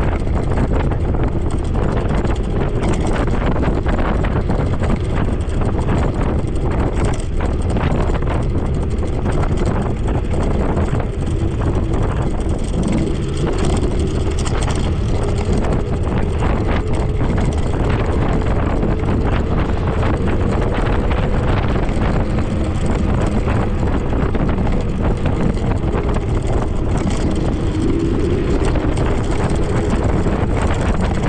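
Steady rush of wind and road noise from an MS Energy X10 electric scooter riding along a street at speed, with a thin whine underneath that drifts slowly up and down in pitch.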